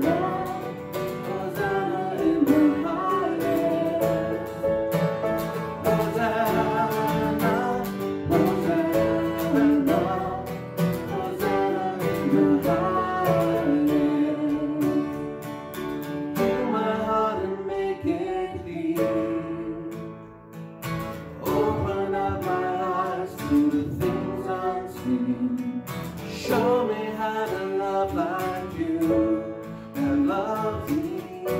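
A praise song performed live: a woman singing, accompanied by grand piano and acoustic guitar. The music eases off briefly about two-thirds of the way through, then picks up again.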